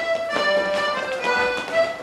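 Folk dance tune played on accordion and fiddle, with a few sharp taps over the music.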